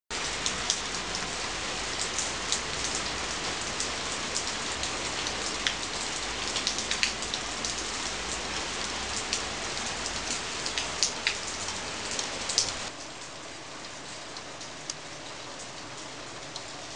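Steady rain with frequent sharp drops splashing close by on a wet surface. About 13 seconds in it drops suddenly to a quieter, sparser rain.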